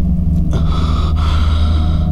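A man gasping for breath heavily, one long breathy gasp about half a second in and another just after a second, over a loud, steady low drone.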